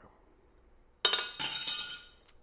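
A sudden loud clinking jingle, bright and ringing, starting about a second in and lasting nearly a second.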